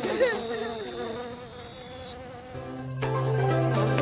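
A sung children's song ends on a held note that fades. About two and a half seconds in, light music starts with a steady low cartoon bee buzz.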